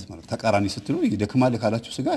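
A man's voice talking, its pitch rising and falling from syllable to syllable.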